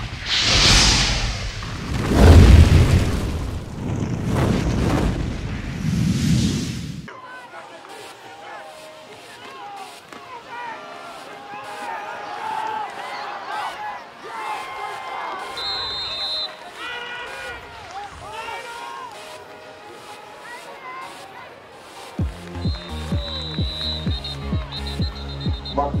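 Cinematic intro sound effects: deep booms and rushing swells for about the first seven seconds, cutting off suddenly. Then quieter audio with voices, and near the end a music track with a heavy, steady beat comes in.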